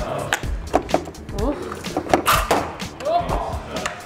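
Plastic clicks, clacks and knocks as parts of a Neato robot vacuum are pried and pulled apart by hand, a string of sharp irregular hits over background music.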